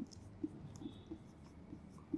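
Marker pen writing on a whiteboard: a few faint, short strokes as a number is written.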